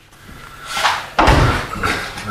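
A sudden thump about halfway through, after a short rise of rustling noise.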